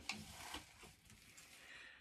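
Near silence: faint room tone with a soft rustle of a paper pattern envelope being handled and opened, about half a second in.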